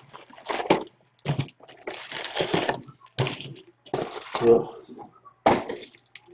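Crinkling and tearing of trading-card pack wrappers and the shuffle of cards in the hand, in a string of short rustling bursts.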